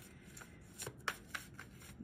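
A deck of tarot cards being shuffled by hand, quietly: a run of short, soft card flicks, most of them around the middle.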